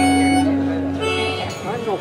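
A group of voices singing along with an acoustic guitar, holding a final note that stops about one and a half seconds in; talk and laughter follow.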